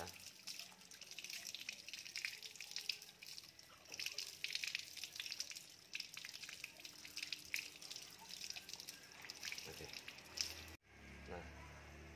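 Thin stream of water from a hose running over a spinning fishing reel and splashing onto the ground, rinsing off the soap residue. The splashing hiss stops suddenly near the end.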